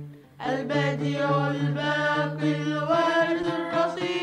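Arabic religious chant sung in long held notes over a steady low accompanying note, after a brief pause in the singing at the start.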